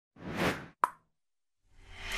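Logo-animation sound effects: a short whoosh that swells and fades, then a single sharp pop. A rising swell begins near the end.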